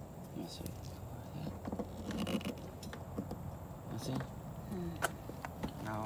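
Faint, indistinct voices with a few light clicks and clinks of handling, the sharpest click about five seconds in.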